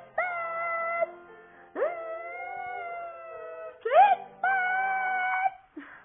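Pop music playing from a flat-screen television in a small room: long held notes, each starting with a quick upward slide, one after another, breaking off shortly before the end.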